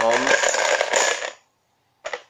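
Small numbered plastic discs clattering and rattling against each other and a plastic box as a hand rummages through them, stopping about a second and a half in.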